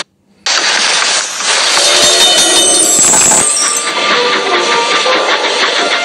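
Sound drops out for half a second, then railway goods trucks rattle and clatter along the track in a quick, even rhythm. From about halfway through, music with held notes comes in over the clatter.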